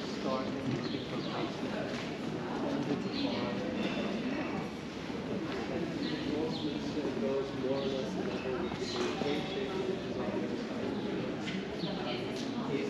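Several people talking, with footsteps on cobblestones.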